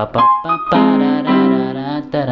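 Portable electronic keyboard played with both hands: a few quick single notes, then held chords that change once.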